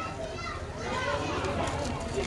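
Background voices in a room, people talking among themselves with children's voices among them, heard faintly while the main speaker is silent.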